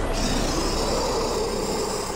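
Cartoon sound effects of a small flying chopper with a loud, steady rushing of wind, with a whoosh that falls in pitch near the middle.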